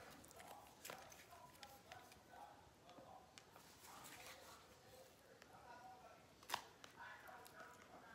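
Faint picking and crinkling at the plastic shrink-wrap on a small card box, with scattered light ticks and one sharp click about six and a half seconds in.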